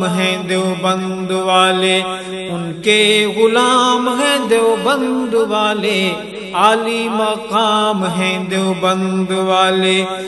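Voices sing a wordless melody with wavering, gliding notes over a steady hummed drone. It is an interlude between the verses of an Urdu devotional tarana in naat style.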